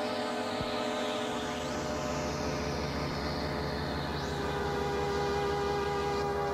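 Korg synthesizer music: sustained drone tones under a slow, falling high sweep and brief chirps. A low, rapid pulsing figure enters about a second in.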